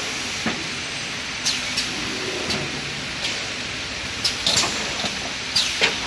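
Pneumatic toilet-paper bundle wrapping machine at work: a steady machine hum broken by short sharp air hisses and clacks as its air cylinders stroke, about seven in all, some in quick pairs.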